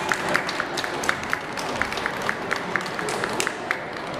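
Scattered hand clapping from spectators, about five claps a second, over a low crowd murmur.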